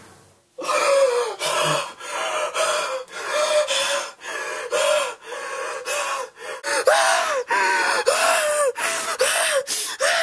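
A young man gasping loudly over and over in quick, voiced gasps, about two a second, starting about half a second in. This is panicked gasping on waking with a start from a nightmare.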